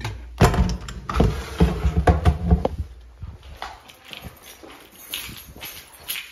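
Footsteps, about two thuds a second, for the first three seconds, then quieter and more scattered.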